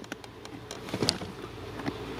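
Faint scraping and a few light clicks from the BMW E46's plastic accelerator pedal being slid along its floor mount while its white retaining clip is pushed down with a flathead screwdriver; the sharpest click comes about a second in.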